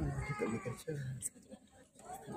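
People talking in Malay, with the words "tak boleh". The talk includes one high-pitched, drawn-out voice right at the start.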